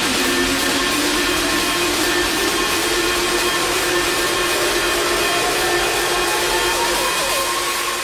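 Trance music build-up: a steady wash of white noise with a synth tone gliding slowly upward, easing off slightly near the end.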